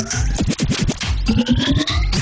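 Turntablist scratching: a sample is worked back and forth on a Numark V7 motorized platter controller over a beat. It comes as rapid cuts with rising pitch sweeps.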